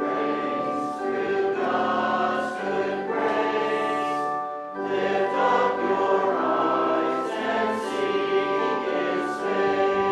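Congregation singing a hymn in held, sustained phrases, with a short break between lines about five seconds in.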